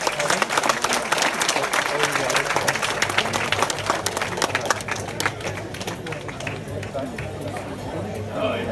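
Audience applauding, a dense patter of many hands clapping that thins out over the last few seconds.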